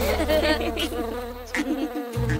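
Cartoon bee buzzing sound effect, a wavering buzz, over a held low note that cuts off near the end.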